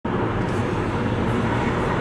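Steady hum of a car driving at road speed, heard from inside the cabin: engine and tyre noise blended, with a low drone.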